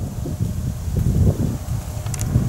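Low rumbling wind noise buffeting the microphone, with faint rustling.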